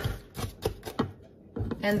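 A few short, light knocks of kitchen utensils against a ceramic mixing bowl, with a sharper click at the start.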